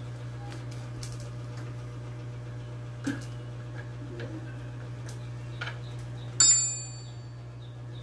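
Light metal clicks from a hex key working in the top of a motorcycle front fork tube, then a sharp metal clink that rings brightly for about half a second, about six seconds in. A steady low hum runs underneath.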